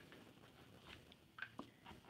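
Near silence: room tone, with a couple of faint ticks about one and a half seconds in.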